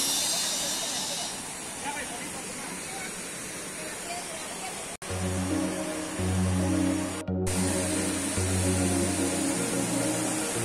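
Steady rush of a rainforest river and small waterfall. About halfway through, after a sudden cut, background music with a low bass line comes in over the water noise.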